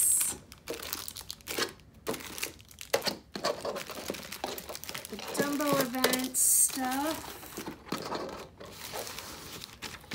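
Clear plastic pin sleeves crinkling and rustling in irregular bursts as bagged enamel pins are handled and slid around on a tabletop. A short wordless voice sound comes about midway.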